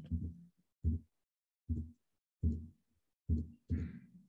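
About five short, dull, low thumps a little under a second apart: keys or a mouse button being pressed to page back through presentation slides, picked up by the computer's microphone.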